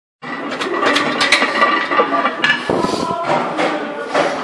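Loaded barbell and weight plates clinking and knocking against a metal squat rack as a lifter sets up under the bar: a quick run of sharp metal clicks in the first second and a half, another knock a little later, then a low rumbling shuffle near the end.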